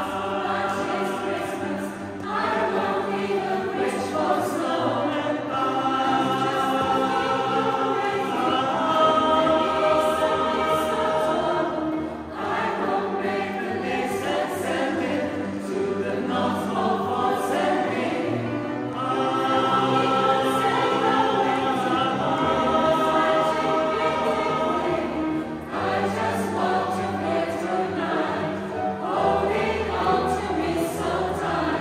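Mixed choir of women's and men's voices singing in harmony, in phrases of long held chords with short breaks every six to seven seconds.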